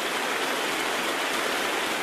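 Steady hiss of rain ambience, the opening of the soundtrack's music track, with no tune or beat yet.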